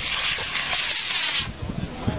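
D12-7 black-powder model rocket motor burning at liftoff: a steady hiss that starts abruptly and cuts off after about a second and a half at motor burnout.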